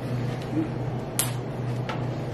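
King crab legs handled at the table: two sharp clicks of shell, one a little over a second in and one near the end, over a steady low hum.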